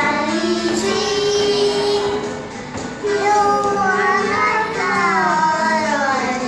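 Children singing a song in Hakka, holding long notes that slide between pitches, over a steady instrumental accompaniment.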